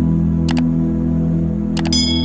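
Mouse-click sound effects over sustained, steady ambient music: one click about a quarter of the way in, then a quick double click near the end, with a chime starting right at the end.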